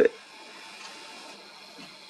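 A man's voice finishes a word right at the start, then faint, steady outdoor background hiss with nothing distinct in it.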